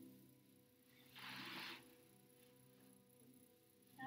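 Near silence: a faint steady hum of room tone, with one brief soft hiss about a second in, like a breath out.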